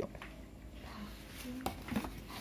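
Light handling noise of a hand reaching into a box, with one sharp click about three-quarters of the way in.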